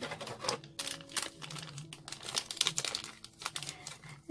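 Thin plastic packaging on a boxed figure crinkling as it is handled, a run of quick irregular crackles.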